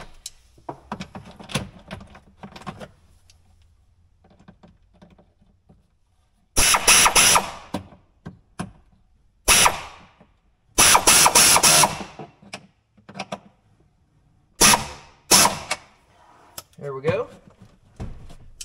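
A power ratchet fitted with a 10 mm socket runs in several short bursts, each about a second or less, driving down a fastener with a damaged head. Faint clicks and handling noises come between the bursts.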